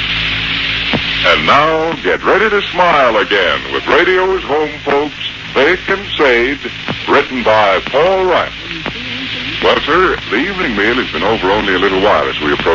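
Speech from an old radio broadcast recording, with steady hum and hiss under the voice. The speech starts about a second in.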